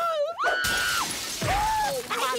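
Cartoon sound effect of window glass cracking and shattering: a sudden crash about half a second in that dies away within a second. A held tone runs just before and into it, and a short rising-then-falling tone comes near the end.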